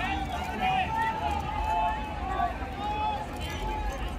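Indistinct voices of people talking and calling in the stands, over a low steady rumble of stadium noise.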